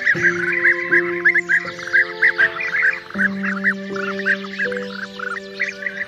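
Soft sustained music chords shifting about once a second, with a dense chorus of small birds chirping rapidly over them.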